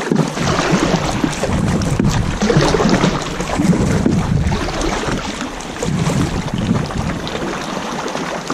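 Kayak paddle strokes splashing and dripping, with water sloshing against the plastic hull in an uneven rhythm.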